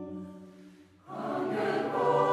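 Choir singing sustained chords: one held chord fades away, and a new, louder chord begins about a second in.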